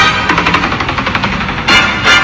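Music playing, carried here by a fast run of short repeated hits before sustained notes come back near the end.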